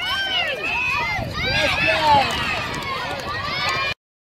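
Several high voices calling out and shouting over one another, short rising-and-falling calls with light taps among them, cutting off suddenly near the end.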